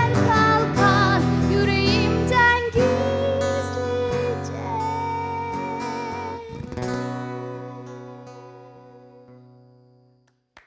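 Acoustic guitar playing the closing bars of a song with a female voice singing a wavering line without words over it for the first few seconds. A final chord is struck about seven seconds in and rings out, fading away.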